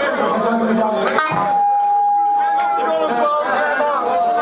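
Crowd chatter in a club between songs, many voices overlapping. About a second in, a click is followed by a steady held tone from the stage's amplified guitar that lasts about two seconds.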